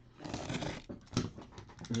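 Cardboard shipping case handled in the hands: a scraping rustle of hands and fingers on the cardboard, then a few short taps and clicks about a second in.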